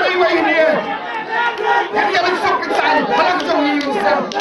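Speech only: a man speaking into a microphone, addressing the gathering.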